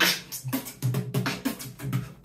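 Solo human beatboxing: a quick rhythm of percussive mouth sounds, sharp hisses and low thumps, with hummed bass tones running underneath.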